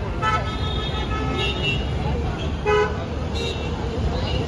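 Road traffic with several short car horn toots, sounding on and off over a steady low rumble of passing vehicles.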